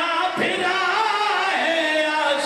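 Men chanting a noha, a Shia mourning lament, into microphones, the voices drawn out in long wavering notes; a single short thump about half a second in.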